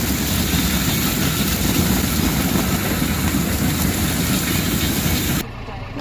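Onions tumbling off a conveyor belt onto another belt, a dense steady clatter over the hum of the running conveyor machinery. Near the end it cuts off suddenly to a much quieter engine hum.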